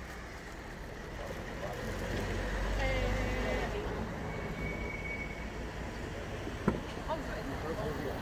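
A low rumble like a vehicle going by, which swells for a couple of seconds and fades, under faint voices. A short faint high beep sounds about halfway through.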